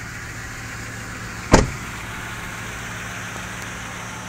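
Toyota Tundra V8 idling steadily, with a single loud door slam about one and a half seconds in.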